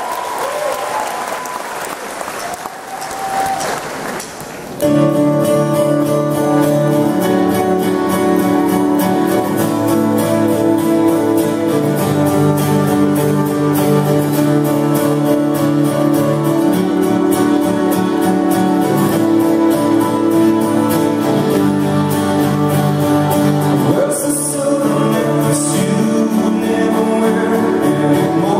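Audience applause for the first few seconds, then about five seconds in a live rock band comes in loudly with guitars, bass and keyboard playing a steady, chord-based intro.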